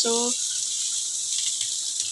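Green beans sizzling steadily in hot olive oil in a frying pan.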